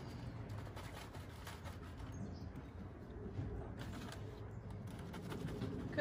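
A pigeon or dove cooing softly a few times over a steady low hum, with faint rustling as wood shavings are poured into a paper bag.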